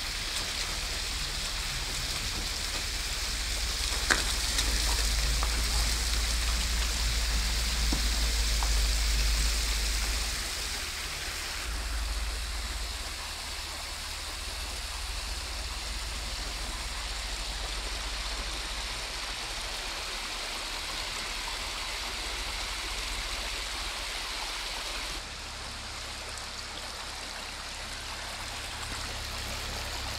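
Muddy floodwater rushing down a rough gravel street: a steady rushing and splashing, louder for several seconds near the start, with one sharp click about four seconds in.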